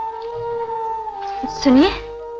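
Film background score of sustained, held tones. Near the end comes a brief, loud voice-like cry whose pitch dips and then rises.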